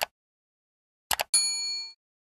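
Subscribe-button sound effects: a sharp double mouse click right at the start and another just over a second in. It is followed by a bright notification-bell ding that rings for about half a second and then stops.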